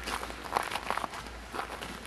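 A few crunching footsteps in packed snow, irregular and a few a second, over a steady low hum from the tracked snowblower's four-stroke Mitsubishi engine running.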